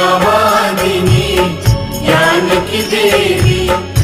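Hindi devotional bhajan: a woman's voice sings a line to Saraswati over a steady drum beat.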